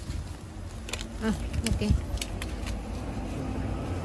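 Steady low outdoor rumble with a few sharp clicks and brief snatches of a voice around the middle.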